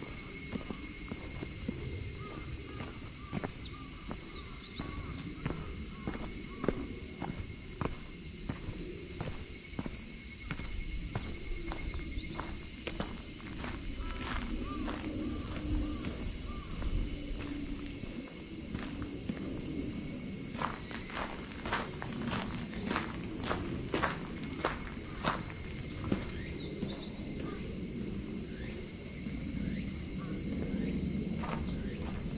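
Footsteps of someone walking on a park path, a steady run of short steps that gets denser and crisper about two-thirds of the way in, over a continuous high-pitched insect chorus.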